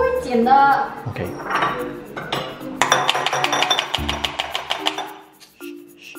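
Ice cubes cracked out of a plastic ice-cube tray and clinking into a glass bowl: a quick run of clicks and clinks starting about three seconds in and lasting about a second and a half.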